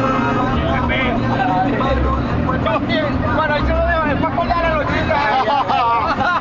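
Men's voices talking over the steady low drone of a bus engine, heard from inside the bus.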